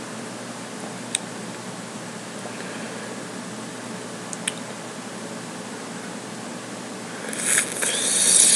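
Steady background hiss with a couple of faint mouth clicks, then near the end a loud breathy rush of air through the mouth lasting over a second: a person breathing hard against the burn of a hot chili.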